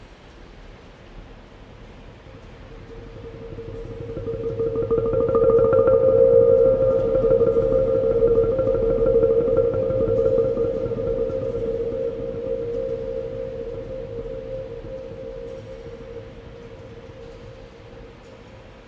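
Large Korean earthenware storage jars (onggi) played as instruments, sounding one sustained ringing tone with a fainter higher overtone. It swells up over a few seconds and then slowly dies away.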